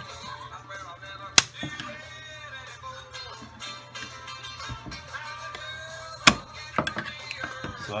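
Background music over sharp metal clicks from a Stevens 311 hammerless double-barrel shotgun's lockwork as a hammer is cocked with a screwdriver: one loud click about a second and a half in, a second a little after six seconds, then a few lighter ticks.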